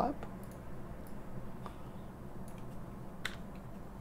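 A few scattered light computer clicks over a steady low hum while a digital whiteboard is cleared.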